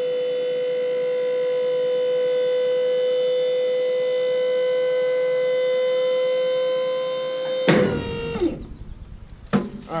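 Load Trail dump trailer's electric hydraulic pump whining at one steady pitch as it powers the dump bed down, stopping about eight seconds in with a loud clunk.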